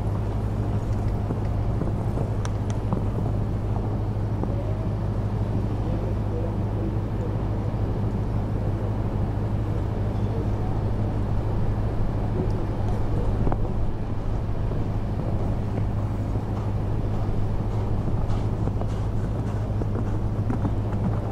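A steady low mechanical hum runs unchanged under faint outdoor background noise, with only a few faint scattered clicks.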